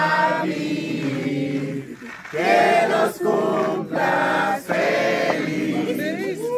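A group of people singing a birthday song together, in sung phrases with short breaks between them.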